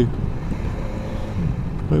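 BMW S1000XR motorcycle under way: steady wind noise on the microphone over its inline-four engine running at a constant speed.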